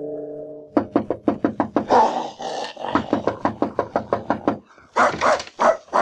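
A dog barking in a rapid run, several barks a second, as if at a visitor. The barking breaks off briefly about four and a half seconds in and then starts again. The ring of a gong fades out in the first moment.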